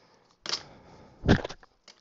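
A short scratchy rasp of double-sided tape coming off its roll, then about a second later a loud, deep thump as the tape roll and scissors are set down on the cutting mat.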